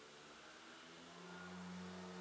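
Near silence: faint room tone with a low steady hum that swells slightly about a second in.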